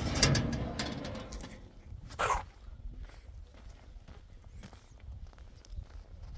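Rustling and rumble on the phone's microphone, with one short, sharp animal call about two seconds in.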